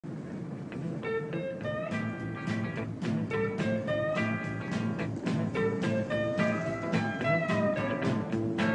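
A rock band playing an instrumental passage in rehearsal: plucked guitar notes, several sliding up in pitch, over a steady bass beat.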